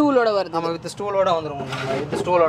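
A person talking.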